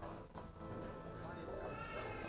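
Church singing: voices holding slightly wavering sung notes over music, growing fuller near the end.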